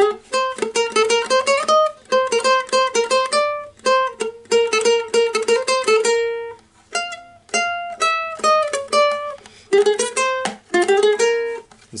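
Ukulele picking a fast single-note melody, a quick run of plucked notes with two short breaks partway through.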